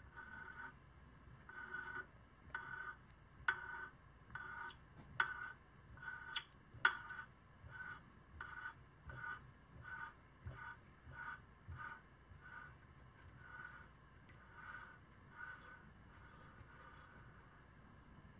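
A thread-cutting tap in a bar tap wrench biting into soft brass held in a vise: short metal-on-metal scrapes about two a second, one for each turn of the wrench. Sharp high squeaks ride on the strokes a few seconds in, then the scraping grows fainter toward the end.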